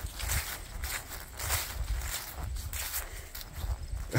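Footsteps walking across grass scattered with dry leaves, a step roughly every half second, over a low steady rumble.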